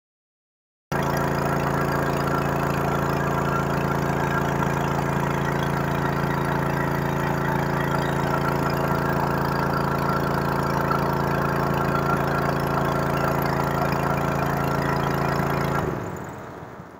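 Small petrol engine driving a tubewell's water pump, running steadily at constant speed with an even hum. The sound starts abruptly about a second in.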